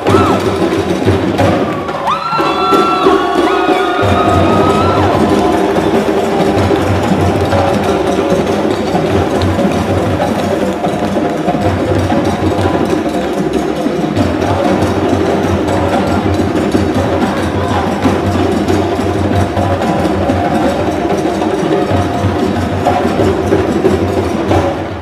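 Percussion-led music for African dance, with a steady, dense drum rhythm throughout. A few brief high wavering tones sound over it about two to five seconds in.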